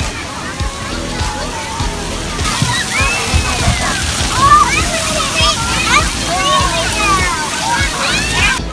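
Water-park din: running, splashing water with many children shouting and squealing. The water noise gets much louder about two and a half seconds in.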